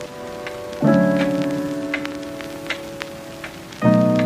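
Sisig sizzling and crackling on a hot iron sizzling plate as a spoon stirs it. Over it plays background music: a sustained chord is struck about a second in and another near the end, each fading slowly and louder than the sizzle.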